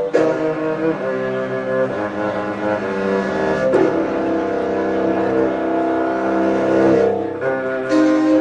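Cello and double bass played with the bow in a live performance, holding long sustained notes that change every second or two, with one sharp bowed attack a little past halfway.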